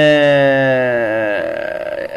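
A man's voice holds one long drawn-out vowel, a hesitation sound like "uhhh". Its pitch sinks slightly before it fades out about a second and a half in.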